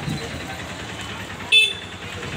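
A short, high-pitched horn toot about a second and a half in, over the steady noise of a busy street with people talking.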